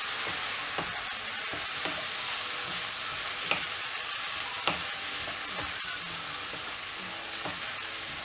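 Chopped mushrooms and masala sizzling in a nonstick wok while being stirred with a wooden spatula: a steady frying hiss with a few light knocks and scrapes of the spatula against the pan.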